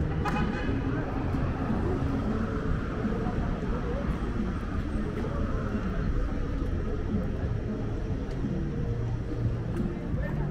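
City street ambience: a steady rumble of road traffic, with passers-by talking, one voice heard briefly at the start.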